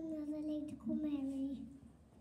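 A young boy's voice singing two long held notes, with a short break between them about three quarters of a second in. The second note ends about half a second before the end.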